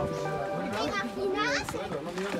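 Children's voices on the trail, one drawn-out call held on a steady pitch and then sweeping sharply upward a little past the middle.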